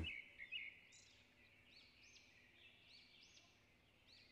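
Near silence, with faint, short high bird chirps repeating in the background.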